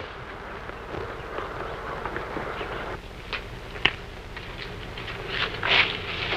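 Steady hiss and low hum of an old film soundtrack, with a few light footsteps or knocks about halfway through and a brief rustle near the end as someone moves among shrubs beside a house.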